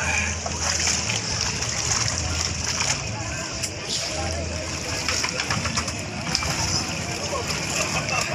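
Sea water splashing and sloshing around a floating bamboo raft as people swim beside it, a steady wash of water noise with voices in the background.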